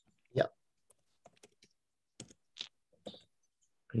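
A few scattered computer keyboard keystrokes, about six irregular taps spread over a couple of seconds.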